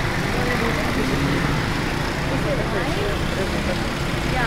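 Steady din of busy street traffic, engines running, with faint voices chattering in the background.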